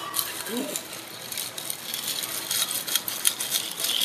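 Long bar spoon stirring ice in a tall hurricane glass of cocktail, a quick, continuous rattling and clinking of ice against the glass and spoon.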